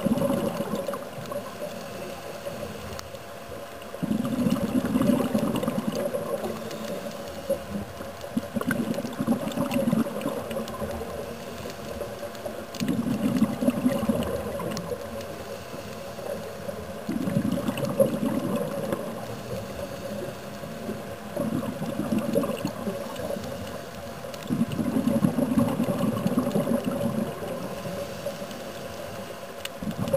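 Scuba diver breathing through a regulator underwater: a rumbling burst of exhaled bubbles about every four seconds, with quieter stretches between breaths, over a steady faint hum.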